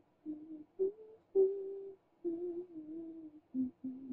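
A woman humming a wandering tune quietly to herself in short notes and brief phrases with small gaps between them.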